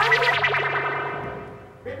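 Short musical transition sting with a heavy fluttering echo effect, loudest at the start and fading away over about a second and a half.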